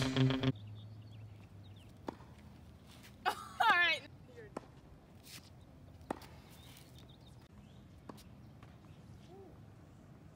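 Music cuts off just after the start, leaving quiet outdoor ambience. Four light taps, like footsteps or shoe scuffs on a hard court, fall about two, four and a half, six and eight seconds in, and a brief voice sounds once about three and a half seconds in.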